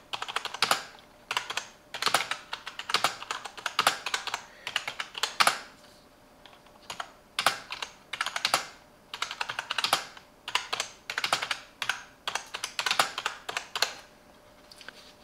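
Typing on a Silvercrest gaming keyboard: runs of rapid key clicks in bursts with short pauses between words, and a longer pause about halfway through.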